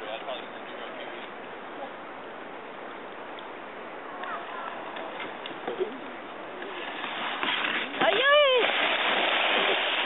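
A kayak sliding down a dirt riverbank and landing in the river with a loud splash about eight seconds in, followed by churning, rushing water. A short whoop rises and falls over the splash.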